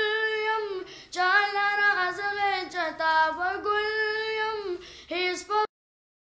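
A boy singing a devotional nazm unaccompanied into a microphone, in long held notes with a gently wavering melody. The voice cuts off abruptly shortly before the end.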